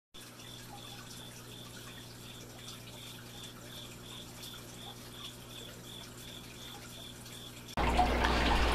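Aquarium sounds, faint: a steady low hum with water trickling, and a soft high pulse repeating about three times a second.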